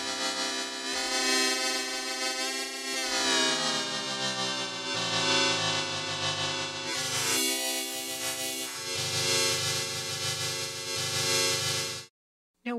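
Dawesome MYTH software synthesizer playing sustained notes through its FM transformer, with the inharmonicity amount modulated by an LFO. The tone swells and changes colour every couple of seconds, with a pitch glide about three seconds in.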